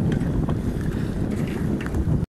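Strong wind buffeting the microphone on a sailboat's bow, a steady low rumble over a rough, choppy sea.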